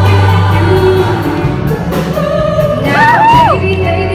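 Women's show choir singing a pop number with a lead soloist on a handheld microphone, over a steady low bass from the accompaniment. About three seconds in, the lead voice holds a high note, bends it and slides down.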